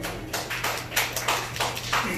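Scattered hand claps from a small audience, many quick irregular claps of varying strength, over a steady low hum.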